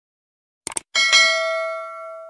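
A quick pair of mouse-click sound effects, then about a second in a bright bell ding that rings out and slowly fades. This is the stock sound of a subscribe-button and notification-bell animation.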